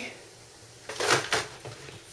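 Brief handling noise about a second in: a few quick scrapes and knocks as objects are moved and picked up on a tabletop.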